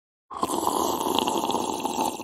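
Cartoon sound of a loud, long slurp through a drinking straw from a cup. It starts a moment in and runs steadily until just before the spoken line.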